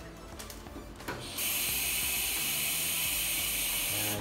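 Bathroom sink tap running into a plastic bag, filling it with water: a steady hiss that starts about a second in and stops at the end as the tap is shut off.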